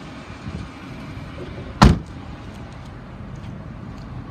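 A car door slamming shut once, a single heavy thud about two seconds in, over steady low background noise.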